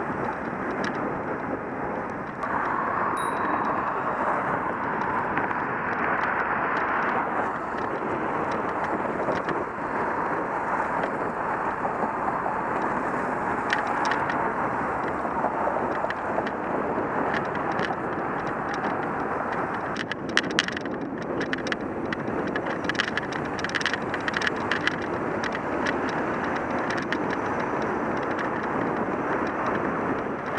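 Steady wind and traffic noise picked up while riding a bicycle alongside a road, with a run of sharp clicks and rattles from about 20 seconds in.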